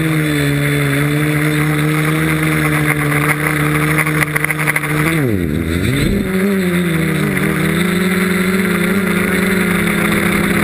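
FW450 quadcopter's electric motors and propellers buzzing at a steady pitch, heard from the onboard camera. About five seconds in, the pitch drops sharply and swings back up, then holds steady a little higher.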